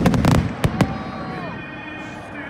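Stadium pyrotechnics going off: a quick string of about six sharp bangs in the first second, then dying away.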